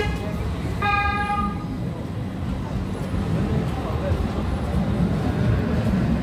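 A vehicle horn gives one short toot about a second in, over a steady low rumble of city street noise.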